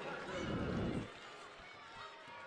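Basketball gym ambience: a voice trails off about a second in, leaving quieter crowd noise and players running on the hardwood court.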